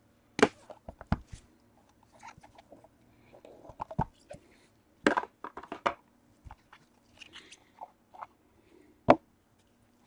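Gloved hands opening a Panini National Treasures card box and handling the box and the card inside. Scattered clicks, taps and scuffs of cardboard and plastic, with the sharpest knock about nine seconds in.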